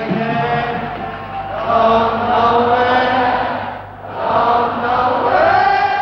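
A group of voices singing together on a live concert recording, in long held notes like a chant. The voices come in two drawn-out phrases, with a brief dip between them about four seconds in.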